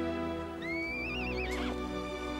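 Film score music with long held chords, and over it a horse whinnies about half a second in: one rising call that wavers for about a second.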